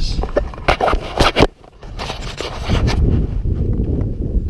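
Handling noise from a body-worn camera: scraping and several sharp knocks in the first second and a half, then a low rumbling noise, as the camera rubs and bumps against clothing and a metal livestock trailer.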